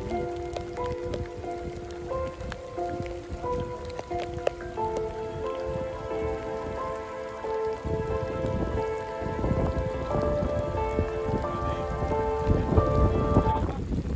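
Steady rain pattering, with many small drop ticks, under background music of slow held melodic notes; the music cuts off just before the end.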